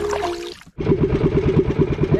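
Background music stops about half a second in, and after a brief gap an outrigger fishing boat's engine is heard running with a fast, even chugging beat.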